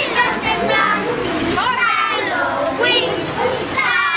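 Many children shouting, calling and chattering at once while they play in a gymnasium.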